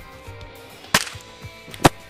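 Two sharp cracks about a second apart, the second one louder, over background music with a steady beat.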